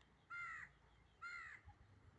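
A crow cawing twice, two short caws about a second apart.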